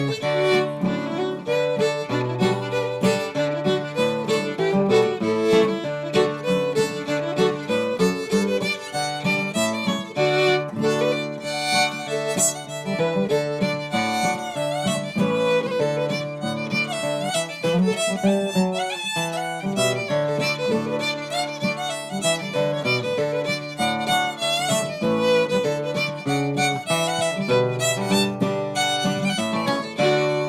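Fiddle and acoustic guitar playing an old-time fiddle tune together. The fiddle carries the bowed melody over the guitar's chords, and the tune closes on a held final chord at the very end.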